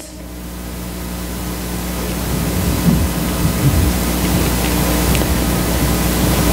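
Steady recording hiss with a low electrical hum, swelling over the first few seconds after the preaching stops and then holding level, as the recorder's automatic gain turns up in the pause.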